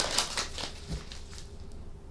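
Tarot cards being shuffled by hand: a short, fluttering riffle of cards at the start, then a soft tap about a second in.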